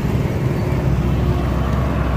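Road traffic noise: a steady low engine rumble with an even wash of street noise.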